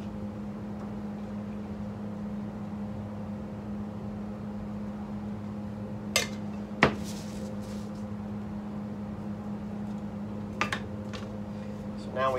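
A paint can and mixing cups handled on a workbench while leftover base coat is poured into clear coat: two sharp clinks about six seconds in and a lighter one near eleven seconds, over a steady low hum.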